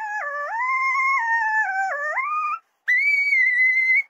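A woman's singing voice sped up to a high, chipmunk-like pitch, held on long notes that dip in pitch and come back up twice. After a short break it jumps to a higher sustained note near the end.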